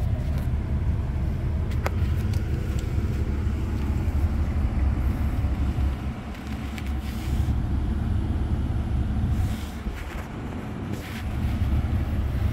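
A Ram 2500's 6.7-litre Cummins inline-six turbodiesel idling steadily in Park, heard as a low rumble from inside the cab.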